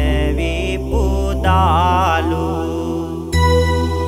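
A Buddhist monk chanting Sinhala devotional verse in a slow melodic line with a wavering held note, over sustained keyboard bass. The voice ends a little after two seconds in, and a keyboard melody enters about a second later.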